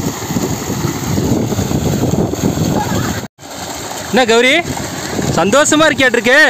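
Water gushing from an irrigation pumpset's hose pipe into a shallow pool, with splashing: a steady rushing noise broken by an abrupt cut about three seconds in. After the cut, high excited voices call out twice over the water.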